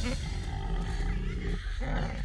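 Two male babirusa sparring face to face, giving low rumbling calls.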